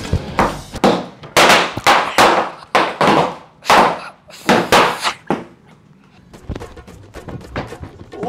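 A string of firecrackers (ladi) going off: about a dozen loud, irregular bangs over the first five seconds or so, thinning to fainter scattered cracks near the end.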